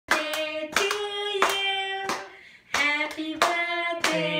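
Voices singing in long held notes, with hands clapping along in time. The singing and clapping break off briefly about halfway through, then start again.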